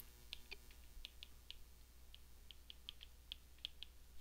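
Faint, irregular light clicks of a stylus tip tapping and dragging on a tablet's glass screen while handwriting words, around twenty small ticks.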